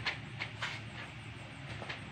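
A hamster's claws clicking lightly on a hard plastic tray as it scurries, three faint clicks over a quiet, steady low hum.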